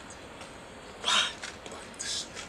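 A man's short, sharp exclamation, "What?", about a second in, over a quiet background.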